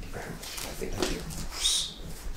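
Quiet, low murmured voices, with a short hissing sound near the end.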